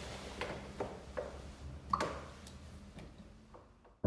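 A few soft, scattered clicks and knocks from a player settling at a digital piano, over faint room noise that fades almost to silence near the end.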